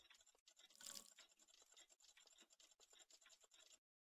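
Near silence: a faint hiss that cuts off to total silence near the end.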